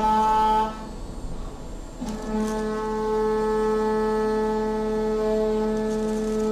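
CNC milling machine's end mill cutting an aluminium block, giving a steady pitched whine. The whine drops away under a second in, leaving a quieter hum, then comes back about two seconds in as the cutter bites again and holds steady.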